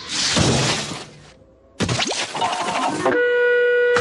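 Cartoon sound effects and score: a loud rushing noise in the first second, a brief lull, then a sudden noisy burst nearly two seconds in. Held musical notes come in about three seconds in.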